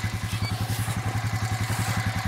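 Honda Rancher 350 ATV's single-cylinder engine idling, a steady putter of about ten beats a second.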